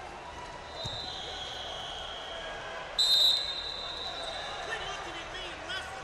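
Referee whistles blowing in a large hall over a murmur of crowd voices, with one loud, short blast about three seconds in. Short squeaks come near the end.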